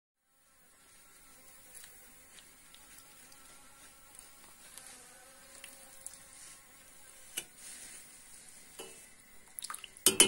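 Faint buzzing of a flying insect, with a few light clicks and taps: the sharpest about seven seconds in, and a quick run of them near the end.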